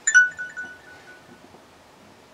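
Glass clink as a bottle knocks against a shot glass while the last drops are shaken out, a bright ring that flutters and fades over about a second and a half.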